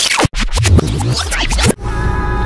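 Music with a record-scratch transition effect, the pitch sweeping rapidly up and down, then settling into held tones near the end.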